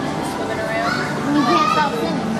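Children's voices chattering and calling out among a crowd of visitors, loudest near the end.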